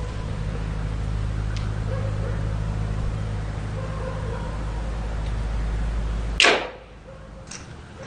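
A steady low hum, cut off about six and a half seconds in by a sudden loud whoosh that dies away quickly.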